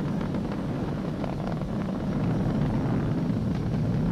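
Steady low rumble of the Falcon 9's nine Merlin 1D first-stage engines during ascent, throttled down for the period of maximum dynamic pressure.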